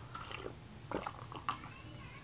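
A person drinking coffee from a mug: a few faint sips and swallows, spaced about half a second apart.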